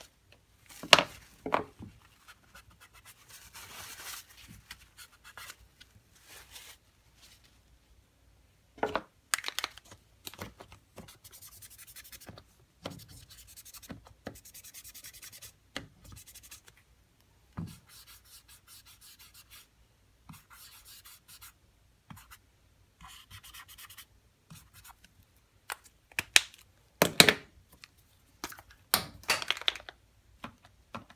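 Posca paint marker tip scratching and rubbing over a painted surfboard in short, irregular strokes, broken by a few sharp taps, the loudest about a second in, about nine seconds in and near the end.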